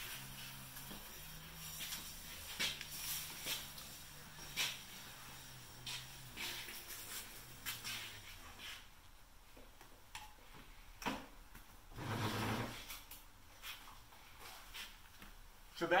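Faint low hum of the CSC City Slicker's electric motor, sagging in pitch a little past the middle, among scattered light clicks and knocks and a short rush of noise near the three-quarter mark.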